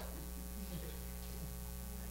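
Steady electrical mains hum, a low, even buzz made of several fixed pitches, from the microphone and sound system.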